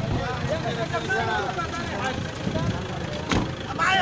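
Men's voices talking in the background over a low, steady rumble, with one sharp knock a little over three seconds in.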